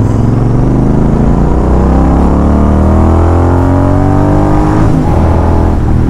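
Royal Enfield Continental GT650's 648 cc parallel-twin engine pulling while riding, its note rising in pitch as the bike accelerates, with a steady rush of wind behind it.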